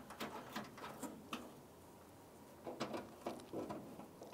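Faint, light clicks and scrapes of a 10 mm bolt being started by hand into the tailgate handle mount inside a truck's tailgate, in two short clusters with a quiet pause between.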